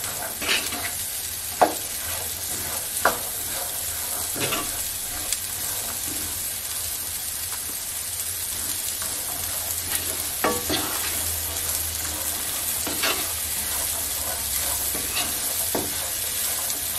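Chickpeas and onion frying in oil in a non-stick pan: a steady sizzle, with a wooden spatula stirring through them and now and then knocking and scraping against the pan.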